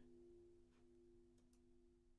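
Near silence: a faint steady low tone of two pitches fading slowly, with a few faint clicks.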